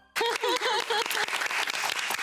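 A small group clapping, with a voice cheering in a wavering tone over the first second.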